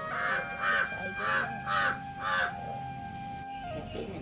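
A crow cawing five times in quick succession, about two caws a second, over quiet background music with held tones.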